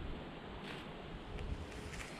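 Wind on the microphone: an uneven low rumble under a faint, steady outdoor hiss.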